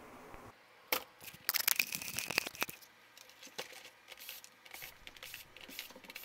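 Parts of a dismantled word processor being handled on a workbench: a sharp click about a second in, then a couple of seconds of clattering and rattling, and a few faint clicks later on.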